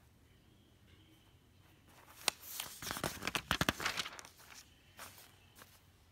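Newspaper coupon insert pages handled and turned, a burst of paper rustling and crinkling from about two seconds in until past four, opening with a sharp snap, then a shorter rustle about five seconds in.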